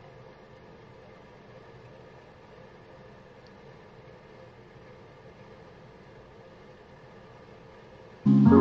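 Faint steady room tone: a low, even hum and hiss with no distinct sounds standing out.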